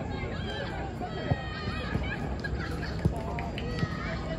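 Outdoor park ambience: distant voices of people calling out over a steady low background rumble, with three sharp knocks, at about one second in, three seconds in and near the end.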